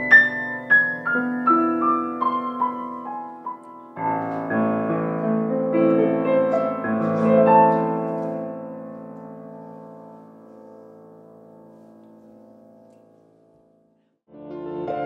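Grand piano played solo. A quick descending run of notes gives way to fuller chords that build to a peak, then the final chord is held and rings out, fading away to nothing near the end.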